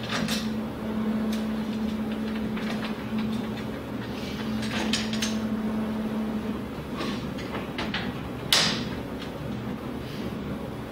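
Metal mounting plate and screws being handled and fitted onto a steel bracket: scattered clinks and knocks, the sharpest about eight and a half seconds in. A steady low hum runs underneath and fades out after about six seconds.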